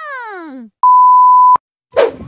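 A loud, steady, high test-tone beep, under a second long, that cuts off suddenly: the tone that goes with TV colour bars. Before it, the tail of a falling, sliding sound fades out.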